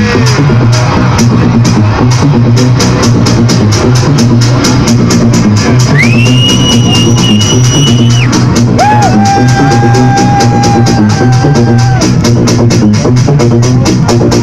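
Loud techno from a club sound system: a steady driving beat over a deep bass line. A long held high tone slides in about six seconds in, and a lower held tone follows about nine seconds in.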